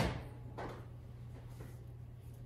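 A refrigerator door being pulled open: a sharp knock right at the start, then a softer knock about half a second in.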